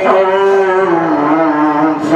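A man's voice reciting the Quran in melodic tajweed style: one long held note that steps down to a lower pitch about halfway through.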